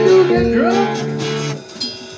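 Band music led by guitar: notes bent upward and held, ringing out, then the playing drops much quieter about a second and a half in.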